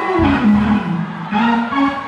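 Live gospel band music: a melodic line with sliding, bending notes over held chords, with no drums or bass underneath.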